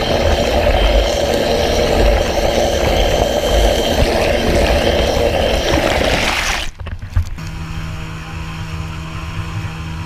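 Outboard motor of an inflatable boat heard underwater beside its guarded propeller: a loud, dense rush of churning water and engine. About two-thirds of the way through it cuts off abruptly to a quieter, steady engine drone heard above water in the boat.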